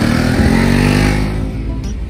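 Motorcycle engine revving and passing close by, swelling and then fading over the first second and a half, over background music.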